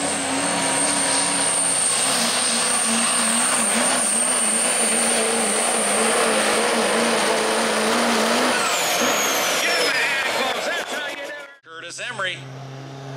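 Modified GMC Sierra HD diesel pickup at full throttle, pulling a weight-transfer sled. Its engine runs loud and steady with a high whistle over it, and the whistle falls in pitch near the end. Just before the end the sound cuts out, then a quieter, lower engine hum starts.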